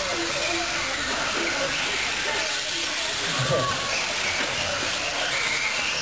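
Electric 1/10-scale RC off-road buggies and trucks racing on an indoor dirt track: a steady hiss of motors and tyres, with faint rising and falling motor whines and background voices.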